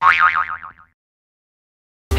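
A cartoon 'boing' sound effect: a springy tone that wobbles up and down several times and dies away in under a second.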